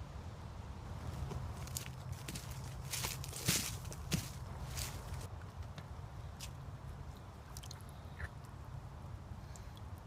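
Handling and movement noise while a pool-noodle catfish line is pulled in from a bayou bank: a cluster of short scrapes and clicks, most between two and five seconds in, with a few more later, over a low steady rumble.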